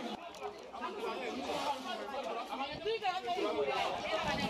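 Indistinct chatter of several people talking at once, their voices overlapping and fairly faint.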